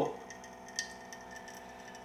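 SANS countertop reverse osmosis water purifier's pump running with a steady, kinda quiet hum as it cycles water through the filter into its pitcher.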